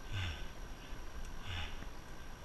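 A cyclist breathing hard while pedalling up a steep climb: two heavy breaths about a second and a half apart, over a steady low rumble.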